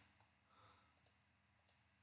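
Near silence, with a few faint computer-mouse clicks.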